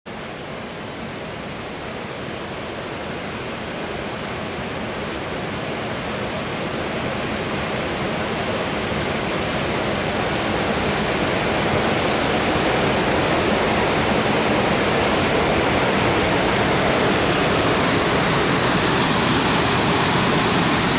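Steady rushing roar of a river waterfall's whitewater, growing gradually louder.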